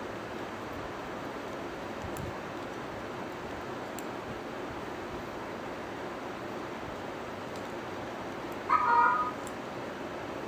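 Steady faint hiss, with one short, high-pitched, cry-like sound about a second before the end that is much louder than the rest.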